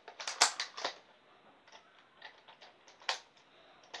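Sharp plastic clicks and rattles from a Nerf blaster being handled: a quick run of clicks in the first second, scattered fainter ticks after, and one loud click about three seconds in.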